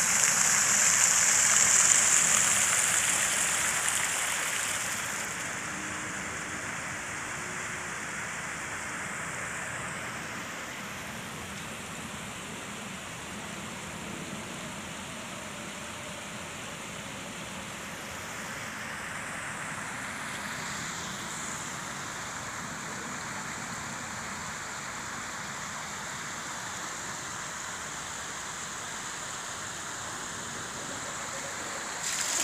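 Jets of a plaza fountain splashing into a shallow pool, a steady rush of water that is loudest for the first four seconds or so, then drops to a quieter, even rush.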